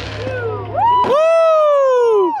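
Whistling fireworks: a loud whistle about a second in that jumps up sharply in pitch and then slides slowly down before cutting off, with a softer whistle just before it.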